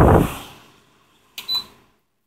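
SPT SF-608RA evaporative cooler's fan blowing air across the microphone, a rushing noise that dies away in the first half second as the fan drops to a lower speed. About a second and a half in comes a short, high beep from the control panel as the speed button is pressed.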